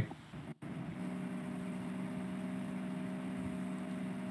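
A steady low hum with several fixed pitches, coming through a voice-chat call. It follows a brief total audio dropout about half a second in.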